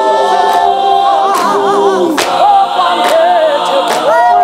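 Mixed choir singing a cappella in held harmonies, one voice wavering with vibrato above the chords, with a sharp clap-and-tap beat landing about once a second.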